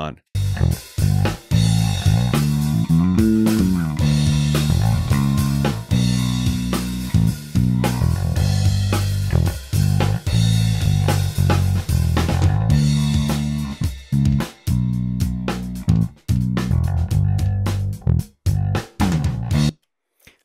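Electric bass guitar line playing with a drum kit, a stepping low bass melody over sharp drum hits. The bass has been spectrally shaped in Melodyne for more attack and less sustain, so it sits into the drums. It stops just before the end.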